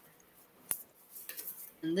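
A single sharp click a third of the way into an otherwise quiet pause, followed by a few faint small clinks; a woman's voice begins just before the end.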